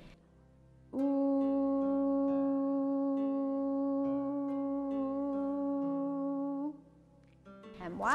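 A woman's voice singing one long, steady 'oo' vowel on a single pitch for nearly six seconds, starting about a second in and stopping cleanly near the end: a sung out-breath in a children's yoga breathing exercise.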